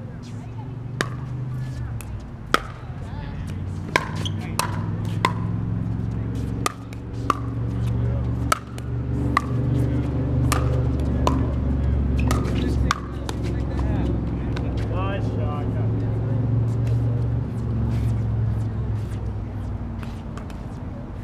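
Pickleball paddles hitting a hard plastic ball during a rally: a string of sharp pops, about a dozen, irregularly spaced, over a steady low rumble.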